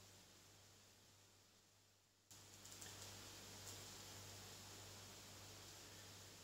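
Near silence: a faint sizzle of French toast frying in butter in a nonstick pan, with a few soft crackles, stepping up slightly about two seconds in.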